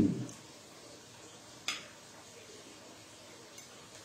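A fork clinks once against a plate partway through, with a much fainter tick near the end.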